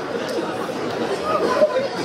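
Audience laughing after a joke: many voices laughing and chattering at once.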